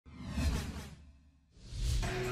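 Two whoosh sound effects from an animated TV broadcast graphics intro: the first swells and dies away within the first second or so, and the second rises near the end.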